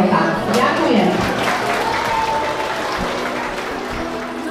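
Audience applauding, with a voice heard over the first second and music starting up about three seconds in.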